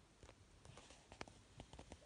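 Faint handling noise: a few light clicks and a brief rustle of paper sheets being moved on a desk.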